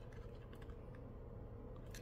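Faint, light clicks of small smartphone parts being handled on a rubber repair mat, over a low steady hum.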